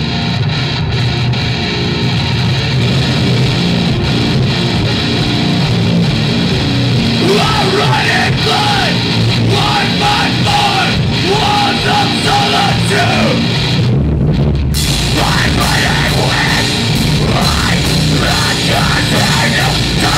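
A rock band playing live and loud: distorted guitars, bass and drums, with a vocalist coming in about seven seconds in. Around fourteen seconds the cymbals drop out for a moment, then the full band comes back in heavier.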